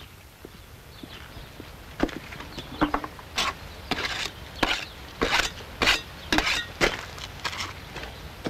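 Scattered knocks and scrapes from handwork at a metal drum of sieved loam being mixed into clay mortar. They start about two seconds in and come irregularly, one or two a second.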